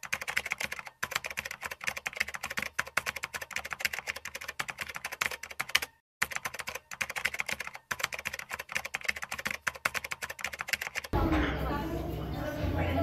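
Rapid keyboard typing clicks, a typing sound effect, running in quick irregular strokes with brief pauses about a second in, around six seconds and near eight seconds. Near the end it cuts to a louder, steadier background sound.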